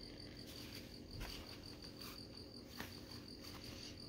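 Faint rustles and soft knocks of a paper notebook being handled and picked up, a few separate bumps, over a steady high-pitched tone that pulses rapidly throughout.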